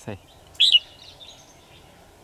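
A red-whiskered bulbul gives one short, loud call about half a second in, followed by a few faint high chirps.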